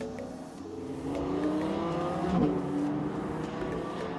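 Audi R8 Spyder's naturally aspirated V10 accelerating, its note climbing for over a second, breaking sharply near the middle and then holding steadier.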